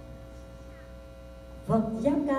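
A steady electrical mains hum from the sound system during a pause in the music, then a loud pitched musical note starts the next piece near the end.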